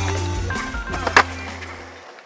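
Skateboard wheels rolling on concrete, with a sharp clack of the board about a second in, over music that is fading out.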